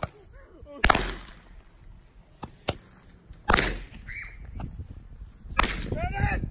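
Handheld roman candles firing: a string of sharp cracking pops a second or two apart, three of them loud and two fainter.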